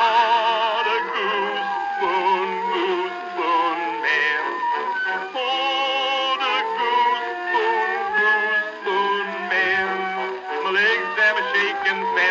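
Instrumental break of a 1905 acoustic-era record: the accompanying band plays the tune in held, wavering notes, with a thin sound that has no deep bass.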